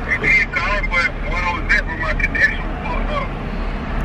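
Speech: a voice talking throughout, over the low steady rumble of a car interior.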